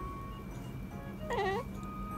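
Calico kitten chattering at prey she has spotted through a window: one short call about a second and a half in, its pitch dipping and coming back up, over background music with steady held tones.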